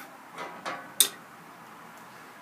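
Woodcarving gouges being handled on a workbench: a few soft handling noises, then one sharp metallic click about a second in as a steel gouge knocks against other tools when it is picked up.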